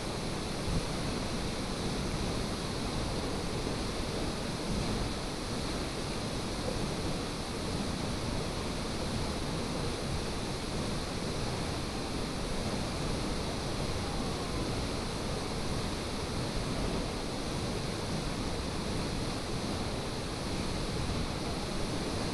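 Steady rushing of a tall waterfall falling into its plunge pool, an even wash of water noise with no breaks.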